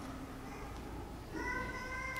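Low room noise in a pause, then about one and a half seconds in a steady high-pitched tone with overtones comes in and holds at one pitch.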